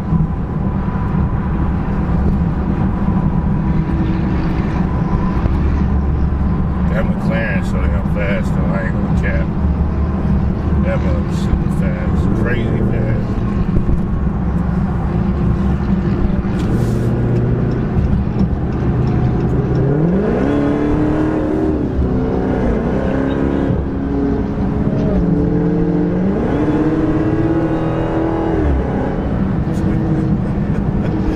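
Supercharged 6.2-litre V8 of a widebody Dodge Charger Hellcat heard from inside the cabin at highway speed, with loud road noise. In the last third the revs rise and fall several times as the car accelerates hard.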